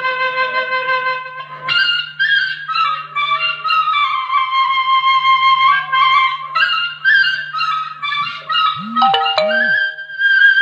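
Instrumental passage of a Khowar (Chitrali) folk song: a sustained melody stepping between held notes over a steady low drone, with two short swooping low notes near the end.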